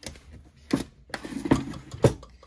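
Wooden desk drawer being slid shut and the next one pulled open: a low sliding rumble with a few knocks of wood and of the things inside the drawer.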